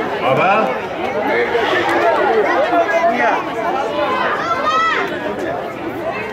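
Many voices, children's among them, chattering and overlapping at once, with a high rising squeal about five seconds in.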